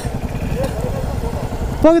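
Motorcycle engines running at low speed as motorcycles pass close by, a low, rapid engine beat throughout.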